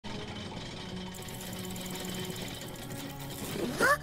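Cartoon sound effect of rope whirling around and wrapping a character: a steady rapid whirring rattle over background music, ending in a short rising squeak near the end.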